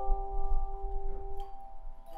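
A student ensemble playing handheld tone chimes: several ringing notes sustain and overlap, with new notes struck at the start and again about a second and a half in.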